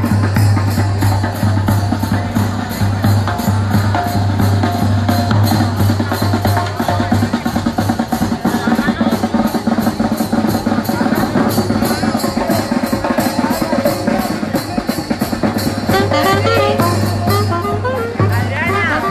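A street brass band playing: a steady drum beat of bass drum and snare, with trumpets and saxophone playing a melody that comes through more clearly near the end.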